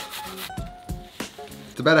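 Wooden rolling pin crushing Ritz crackers in a plastic zip-top bag on a wooden board: crumbs crunching and rubbing under the pin, with a few sharp knocks. The crushing is heard over background music with short plucked notes.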